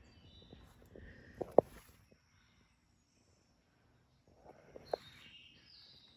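Quiet outdoor ambience with faint, distant birds chirping and a few soft knocks, about a second and a half in and again near five seconds.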